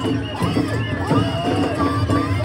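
Festival float music: taiko drums struck with wooden sticks, with high voices calling out over the drumming.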